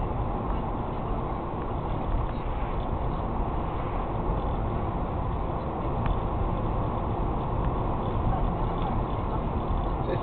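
Steady road and engine noise inside a moving car's cabin, picked up by a dashcam's microphone, with a few faint clicks.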